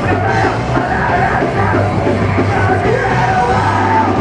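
Hardcore punk band playing live: a vocalist yelling into a microphone over electric guitars, bass guitar and drums, loud and steady.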